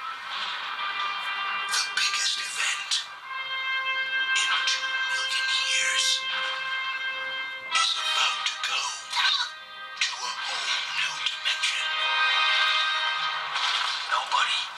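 Animated-film soundtrack, mostly music with some voices, playing through a budget laptop's small built-in speakers: thin, with almost no bass.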